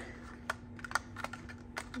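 Die-cut cardstock hearts being pushed out of a freshly cut panel by fingertip: a scatter of small, light paper clicks and taps, about eight to ten in two seconds.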